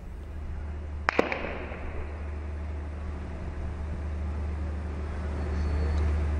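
Steady low hum of a live outdoor feed, with two sharp cracks close together about a second in, each with a short echoing tail.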